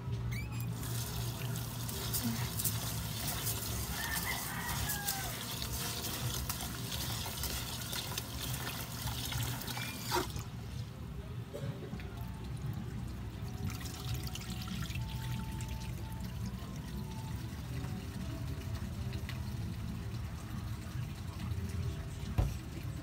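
Water poured from a jug into a rice cooker pot of glutinous rice in a sink to rinse it. The pouring stops about ten seconds in and is followed by quieter water sloshing.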